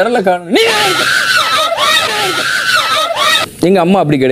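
A person screaming in a high, sustained voice for about three seconds, the pitch wavering, between short bits of speech.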